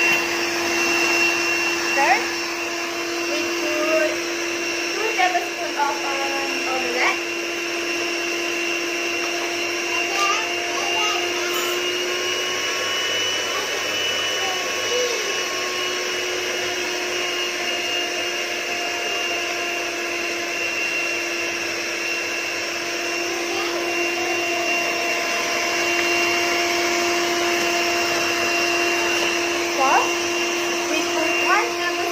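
Electric hand mixer on its stand bowl running steadily at one constant pitch, beating the Milo ice-cream mixture, with a few brief knocks against the bowl in the first several seconds.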